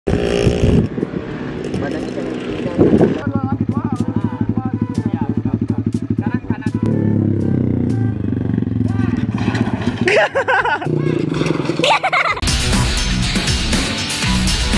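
Small motorcycle engine running on a track with fast, even firing pulses, then a steadier engine note, with voices and laughter over it; music starts near the end.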